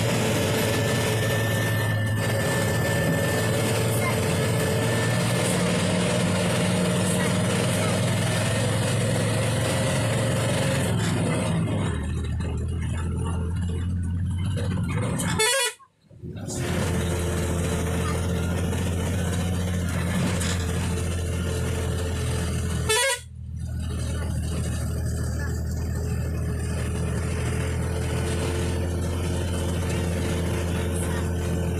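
Passenger bus engine running steadily with road noise, heard from inside the bus on winding ghat bends; the engine note shifts lower about 12 seconds in. The sound drops out briefly twice, about halfway through and again a few seconds later.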